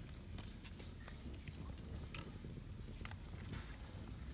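Open wood fire burning under a clay cooking pot: a faint low rumble with scattered small crackles and clicks, one sharper crackle about two seconds in.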